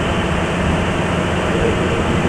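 Steady background noise: an even hiss with a low hum beneath it, holding level throughout.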